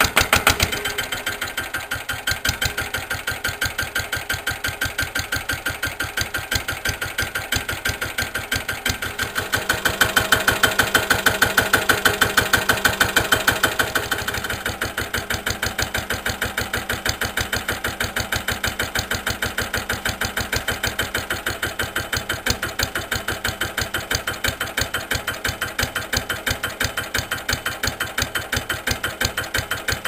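Lister LT1 single-cylinder air-cooled diesel catching on a hand-cranked cold start and running with an even beat of firing strokes, louder for a few seconds about ten seconds in before steadying. The engine is very cold, at about minus one, and has not yet settled as it warms.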